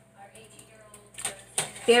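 A long-handled metal utensil stirring a broth-filled aluminium stockpot, knocking against the pot a couple of times about a second in.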